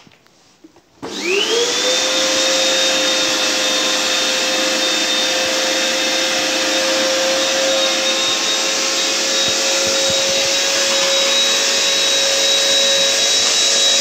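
Vacuum cleaner switched on about a second in, its motor whine rising quickly to full speed and then running steadily.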